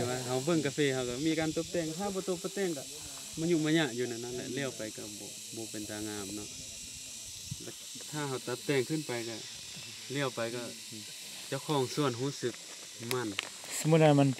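People talking in short bursts, with quieter pauses, over a steady high-pitched hiss.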